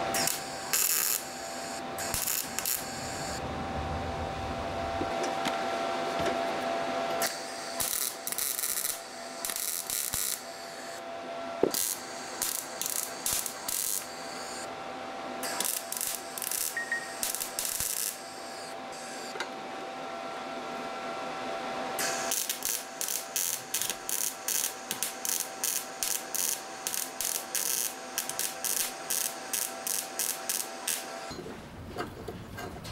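Gas-shielded MIG welder tack-welding steel exhaust-manifold tubes: crackling arc bursts of a second or two each, then from about two-thirds through a quick run of short tacks, about two a second.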